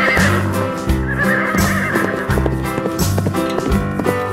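Recorded horse whinnies, twice: one trailing off just after the start and a longer one about a second in, over background music with a steady beat.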